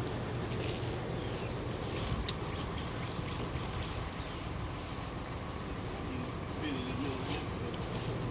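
Steady outdoor background noise with light crackles of the plastic wrapping on a mattress as it is pushed into an SUV's cargo area, and faint voices about six to seven seconds in.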